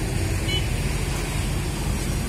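Steady low rumble of motor traffic in the background.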